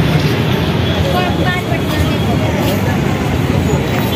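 Street traffic at a busy road junction: a steady low rumble of passing vehicle engines, with voices in the background.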